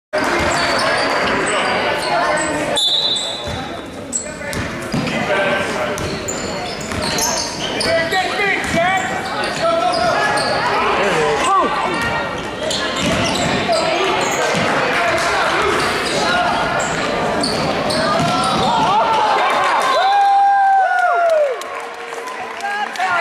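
A basketball bouncing on a wooden gym floor during play, mixed with indistinct shouts from players and spectators, echoing in a large hall.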